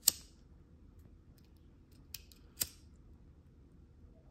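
Bic lighter being flicked: three sharp clicks of the spark wheel, the loudest right at the start and two more about two seconds later, half a second apart.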